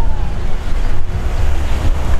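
Strong wind buffeting the microphone, a loud, ragged low rumble, with a faint falling whine that fades out about half a second in.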